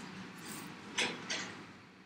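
A car driving past outside, a steady rush of passing traffic noise that slowly fades away, with two short hisses about halfway through.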